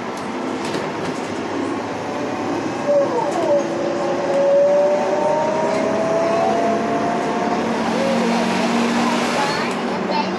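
City bus heard from inside, driving along with steady road and engine noise. About four seconds in, a drivetrain whine rises slowly in pitch as the bus gathers speed.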